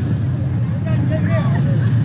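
Steady low rumble of motor scooters running on a street, with people talking over it.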